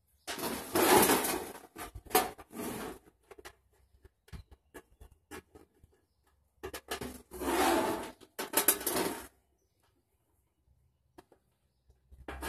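Handling noise as a plastic handle is fitted to a portable gas grill's metal lid: bursts of rubbing and scraping, with small clicks and ticks of the hardware between them. The noise comes in two spells, over the first three seconds and again from about seven to nine seconds in, then stops.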